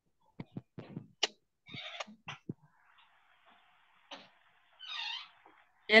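Scattered soft clicks and knocks picked up by a video-call microphone, then a short, high-pitched call about five seconds in.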